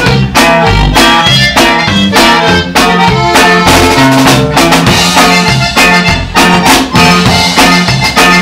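Conjunto band playing a polka live: an accordion carries the melody over drum kit and a bass line that steps back and forth between low notes on a steady, bouncy beat.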